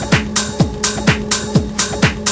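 Minimal techno from a DJ mix: a four-on-the-floor kick drum, about two beats a second, with off-beat hi-hats over a steady low drone.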